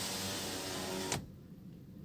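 Nissan Grand Livina driver's-door power window motor running, moving the glass with a steady whine, then stopping a little over a second in.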